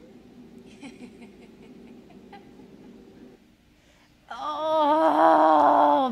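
A faint low hum with a few soft clicks, then from about four seconds in a loud, drawn-out 'awww' with a wavering pitch.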